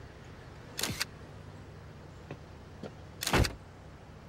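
Two shutter releases of a film SLR camera, about two and a half seconds apart, the second louder and heavier, over a steady low hum.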